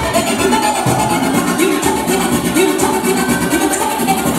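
Electronic dance music from a live DJ set, playing loud through PA speakers with a steady beat and a repeating melodic line.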